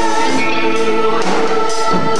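Rock band playing live: electric guitars, bass, keyboards holding sustained chords and drums with repeated cymbal hits, with singing.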